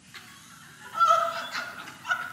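Faint room sound, then about a second in a short, high, held vocal sound from a person that lasts under a second.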